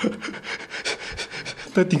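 A man's breathy laughter close to the microphone: a quick run of short huffs of breath, before speech starts again near the end.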